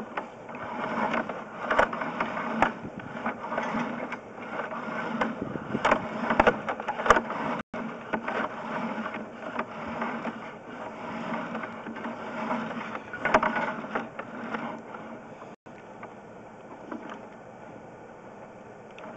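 Sewer inspection camera's push cable and camera head being pulled back up out of the drain pipe, rattling and scraping with irregular clicks; the sound settles to a quieter, steadier noise in the last couple of seconds as the camera comes out.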